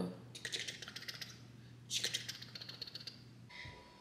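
Plastic mustard squeeze bottle sputtering and crackling as it is squeezed, in two bursts of about a second and a half each.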